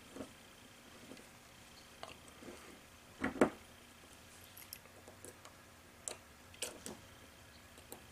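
Faint scattered clicks and ticks of steel pliers working against the rifle's hammer spring and hammer spring strut while the spring is being compressed, with one louder knock about three and a half seconds in and a few more clicks between six and seven seconds.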